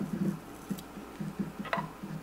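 Hair-cutting scissors snipping through a fringe of bangs: a quick run of light clicking snips.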